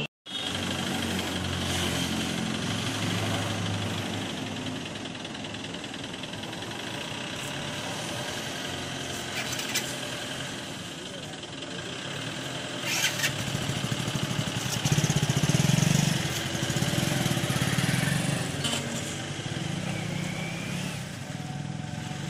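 Diesel engine of a 2005 Mahindra Marshal jeep running as the vehicle drives along the road, louder for a few seconds in the second half as it passes closest.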